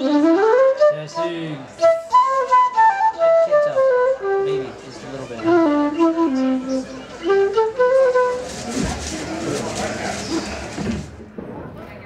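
Concert flute playing a melody of held and stepping notes for about eight seconds. The music then stops and a few seconds of audience applause follow, fading away near the end.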